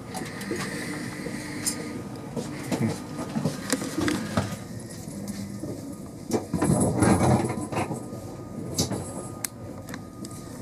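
Cabin ambience inside a Class 390 Pendolino electric train at the platform with its doors closed, waiting to depart. Scattered clicks and knocks run through it, with a louder rustling burst about seven seconds in.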